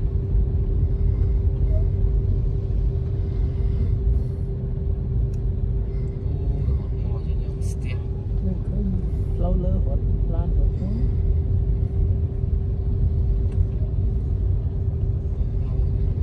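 Road rumble of a moving car heard from inside the cabin, steady and low, with a constant hum running through it.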